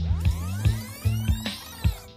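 Background electronic music with a pulsing beat and steady bass, and a sweeping whoosh effect gliding through the middle.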